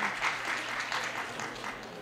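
Studio audience applauding, dying away toward the end.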